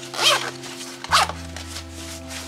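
YKK zipper on a nylon gear pouch being pulled, two quick zips about a second apart.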